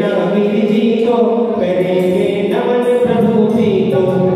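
A man singing a Hindi devotional bhajan into a microphone, accompanied by an electronic keyboard.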